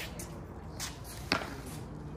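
A single sharp knock of a pickleball, a short pop about a second and a half in, over a faint steady background.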